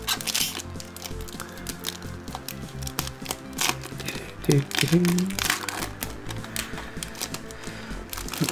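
Foil booster-pack wrapper crinkling and tearing as it is opened by hand, a run of quick crackles, over background music. A short voiced murmur comes about four and a half seconds in.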